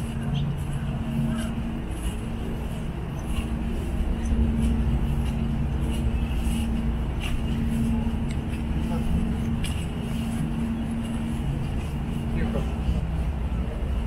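Outdoor city ambience: a steady low mechanical hum from traffic, with people's voices in the background.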